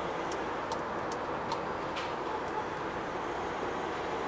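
Cabin noise of a MAN TGE van's 2.0-litre 177 hp diesel at motorway speed: steady engine drone with tyre and wind noise. Over it the turn-signal indicator ticks about twice a second during a lane change, stopping about two and a half seconds in.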